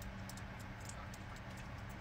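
Faint, scattered light clicks of fingers and long fingernails handling a small plastic partial denture as adhesive is pressed onto it, over a low steady hum.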